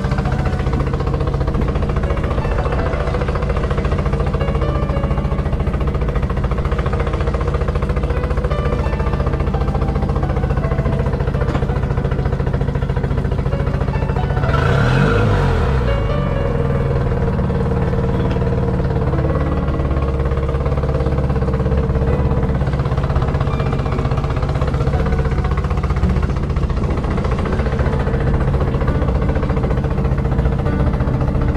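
Music playing over a Honda BF20 four-stroke outboard motor running on a stand, its pitch swinging up and back down about halfway through as it is revved.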